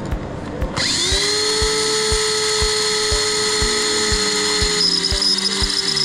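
Tokyo Marui BB autoloader's electric motor whirring up about a second in and running steadily as it feeds BBs into a standard magazine. Its pitch shifts about five seconds in.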